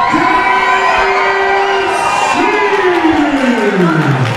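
Crowd cheering in a hall while an announcer's voice draws out a long call: held notes, then a slow falling pitch near the end.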